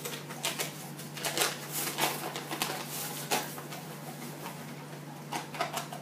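Paper flour bag crinkling and rustling in irregular sharp snaps as it is opened and handled, over a steady low hum.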